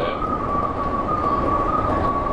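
JR 201 series electric train running, heard from the driver's cab: a steady rumble of wheels on track with a high, slightly wavering whine held throughout, typical of the train's thyristor chopper control.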